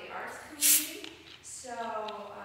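Indistinct voices in a hall, with a short, sharp hiss a little over half a second in.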